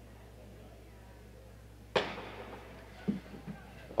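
A starting gun fired once to start a 1500 m race: a single sharp crack about two seconds in, with a short ringing tail.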